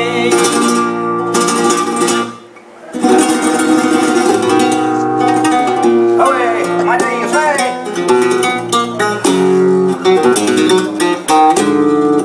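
Flamenco acoustic guitar playing a seguiriya, with quick plucked runs and strummed chords. A sung line with a wavering, held tone ends right at the start. The guitar dips briefly about two and a half seconds in, then carries on alone.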